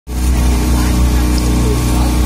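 Speedboat engine running steadily at speed, a low, even drone, with a rush of wind and water over it.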